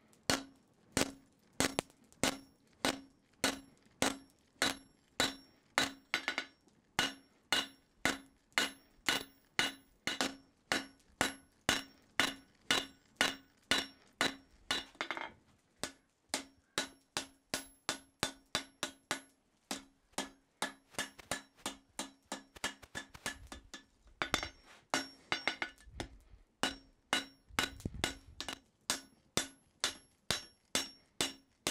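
Hand hammer striking red-hot steel on an anvil, about two blows a second, each blow ringing briefly off the anvil, with a few short pauses. The steel is being bent over the anvil's edge to form a vise jaw.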